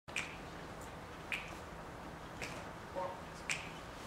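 Four finger snaps, evenly spaced about a second apart, counting off a slow tempo for the band.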